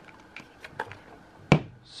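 Small plastic clicks and handling noise as a compact flashlight and its charger are worked out of a plastic box insert, with one sharp, loud click about one and a half seconds in.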